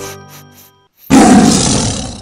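A chiming music jingle fades out, and about a second in a loud roar sound effect, like a large animal's roar, starts suddenly and dies away.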